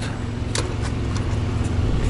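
A vehicle engine idling with a steady low rumble, and a brief click about half a second in.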